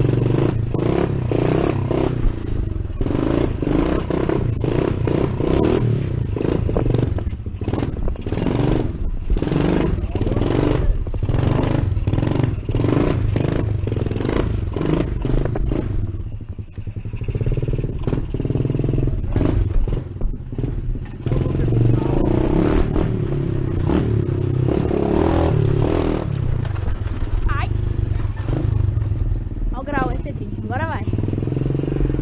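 ProTork TR100F mini dirt bike's small four-stroke single-cylinder engine running under way. Its note surges and drops in quick pulses through the first half, dips briefly about halfway, then runs steadier.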